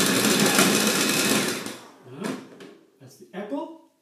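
Food processor motor running with its grating disc shredding apple pieces, then switched off and winding down about two seconds in.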